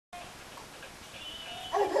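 A faint, steady high electronic tone, then near the end a short, loud, high-pitched voice with a laugh in it.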